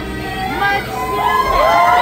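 Concert audience cheering, with many high-pitched shouts and screams, growing louder from about halfway through as the performer bows.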